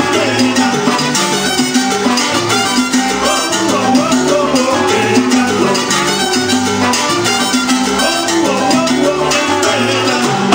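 Live salsa band playing at full volume, with timbales and congas driving a steady, busy rhythm under changing bass notes.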